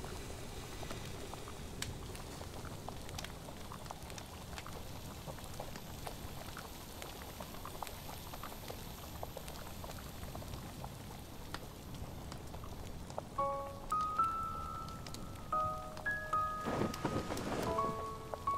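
Quiet background of steady hiss with scattered small crackles, then about 13 seconds in a slow melody of single held notes begins.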